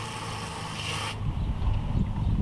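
Water from a garden hose running into a plastic backpack sprayer tank, cut off abruptly about a second in as the nozzle is shut, followed by low bumps of the hose being handled.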